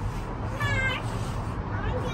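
A short, high-pitched wavering cry, under a second long, a little over half a second in, over a steady low rumble.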